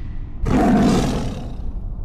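Logo-animation sound effect: a sudden roar-like hit about half a second in that fades away over about a second, over a steady low rumble.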